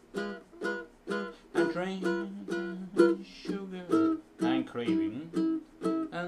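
Baritone ukulele tuned in fifths, strummed in chords with a steady rhythm of about two strums a second, an instrumental passage between sung lines.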